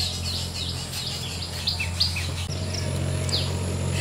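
Small birds chirping: a scattered series of short, falling calls, over a steady low hum.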